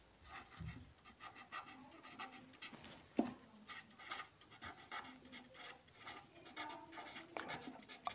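Marker pen scratching on paper in many short, faint strokes as words are handwritten, with one louder knock about three seconds in.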